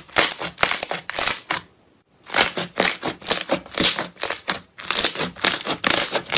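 Glossy slime squeezed and pressed by hand, making a rapid, dense run of crackling clicks and squelches, with a brief pause about two seconds in.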